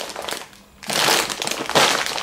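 Plastic bag of dry campanelle pasta crinkling as it is handled and set down: a brief rustle, a short lull, then louder crinkling from about a second in.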